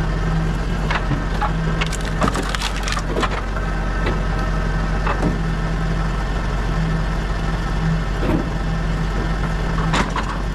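Pilkemaster firewood processor splitting logs: sharp cracks and splintering of wood, densest about two to three seconds in and again around five and eight seconds, over the machine's steady engine-driven drone.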